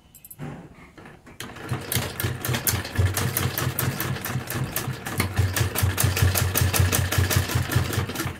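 Domestic sewing machine stitching a seam through layered fabric: a quick, even clatter of needle strokes that starts about a second and a half in, after a few soft clicks, and keeps up to the end.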